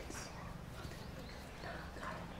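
Quiet classroom ambience with faint, indistinct voices.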